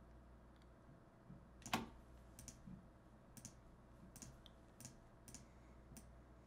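Faint computer mouse clicks, about six of them spread unevenly, the loudest a little under two seconds in, over a low steady hum.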